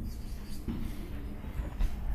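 Marker pen writing on a whiteboard in a few short strokes.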